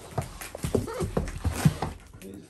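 An Alaskan malamute puppy moving about in a large cardboard box: irregular scuffs and knocks against the cardboard.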